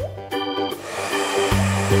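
A handheld hair dryer comes on about a second in and blows steadily on its cool setting, under background music with organ-like chords.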